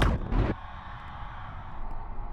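Sound-effect sting for an animated logo reveal: a loud noisy hit with a second peak that cuts off sharply about half a second in, leaving a quieter steady drone.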